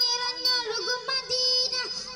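A boy singing a devotional song into a handheld microphone, holding long, wavering notes.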